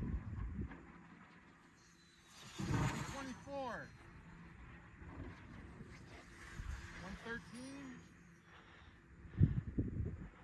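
Faint calls from a distant voice, twice, each rising and falling in pitch, over low wind rumble on the microphone.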